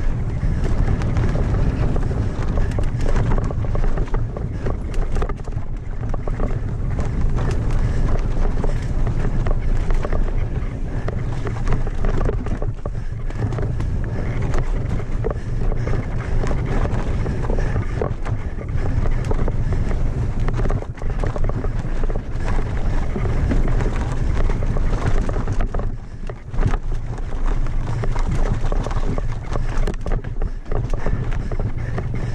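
Mountain bike descending a rocky dirt trail at race speed: steady wind rumble on the microphone over constant rattling and clattering of the bike and tyres on loose dirt and rocks.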